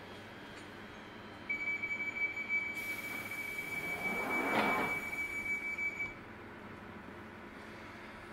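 1995-stock Northern Line tube train's door-closing warning: a steady high tone for about four and a half seconds while the sliding doors run shut, meeting about four and a half seconds in.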